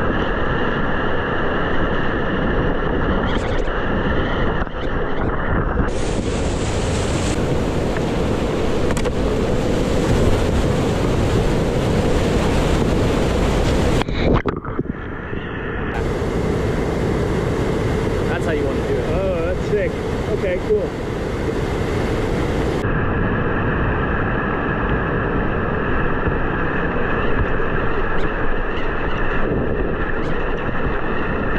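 Whitewater rushing loud and close through a boulder rapid, heard from a kayak. Its tone changes abruptly several times as the recording cuts between cameras.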